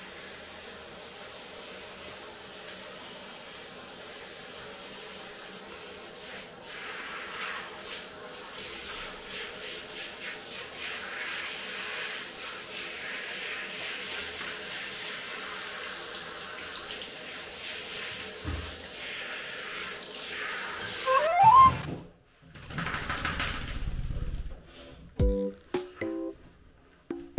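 Handheld shower head spraying water, rinsing lather out of a wet poodle's coat, over background music. The spray grows louder a few seconds in, and near the end there is a short rising squeak and one loud sudden sound before the spray stops.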